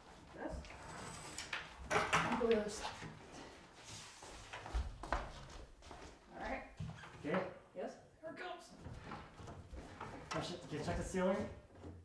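Quiet, untranscribed talk and effortful voices of two people handling a large wooden cabinet, with a few wooden knocks and bumps as it is tipped upright.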